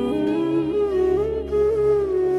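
A woman singing a long held note over slow instrumental backing, while a lower accompanying line steps up in pitch during the first second.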